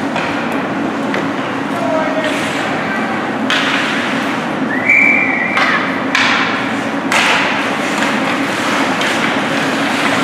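Ice rink ambience during youth hockey play: spectators' voices, one raised call about five seconds in, and occasional knocks of sticks, skates and puck on the ice and boards.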